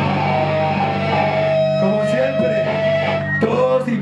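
Live rock band's electric guitar and bass holding a sustained chord that rings on without a drum beat, with a held higher note over it and a few sharp hits near the end.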